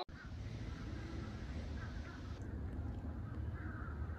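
Outdoor ambience: a low, steady rumble with faint bird calls in the distance, a few short calls early on and again in the second half.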